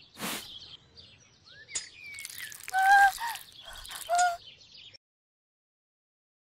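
A short whoosh, then a string of bird-like chirps and whistles in a sound-effect track, with two louder whistled notes near the middle. It all cuts off suddenly about five seconds in.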